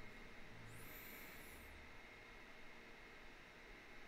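Near silence: faint steady hiss of room tone.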